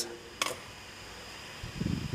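A single sharp click about half a second in, then soft low rustling and knocking near the end as hands handle the 3D printer hot end's wires, over a faint steady hiss.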